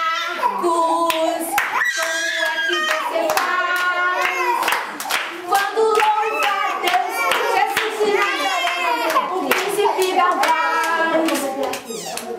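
A woman and a group of children singing a children's worship song together, with hand clapping.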